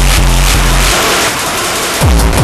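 Hardcore techno track in a breakdown: the pounding bass and beat drop out about halfway, leaving a loud hissing noise sweep that builds into the next drop.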